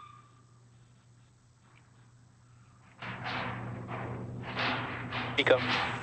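Faint for about three seconds, then a voice over a noisy, crackly control loop calling out main engine cutoff ('MECO') on the Falcon 9 first stage.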